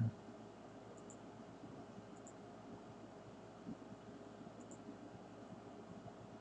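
Faint room tone and microphone hiss with a few faint double clicks, about three, from a computer mouse button.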